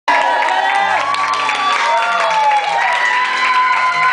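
A song plays with a stepping bass line while a group cheers with long, drawn-out whoops that slide down in pitch.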